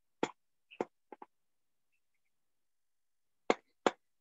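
Computer mouse clicking: a few sharp clicks in the first second or so, some in quick press-and-release pairs, then a louder pair of clicks near the end.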